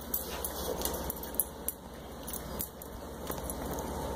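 A dog moving about on a tile floor: scattered light clicks and jingles, with one sharper tap about one and a half seconds in.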